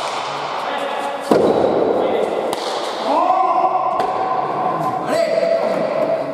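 Pelota ball cracking off the court walls and players' hands during a rally, each hit ringing in the large hall, the loudest about a second in. From about three seconds in, long held shouts carry over it.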